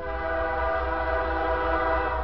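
Canadian Pacific diesel locomotive's air horn sounding a long, steady blast as the train approaches, a chord of several tones held together.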